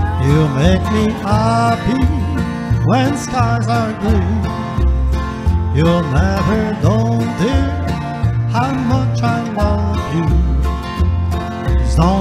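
Instrumental break of a country song: a Fender Telecaster-style electric guitar plays a lead line full of bent notes over a backing track with a steady, pulsing bass line.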